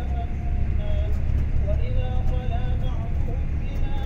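Steady low rumble of a road vehicle driving along, heard from inside.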